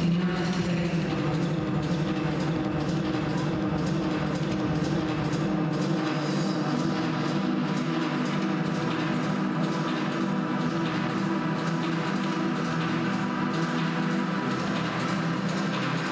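Music with a steady beat over held low chords, at an even level.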